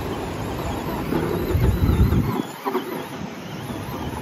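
Traxxas Slash 2WD RC truck running through loose sand, its electric motor and tyres heard over a low rumble that cuts out abruptly a little past halfway.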